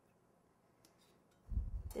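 Near silence, room tone with a couple of faint ticks, then a short low thump about one and a half seconds in.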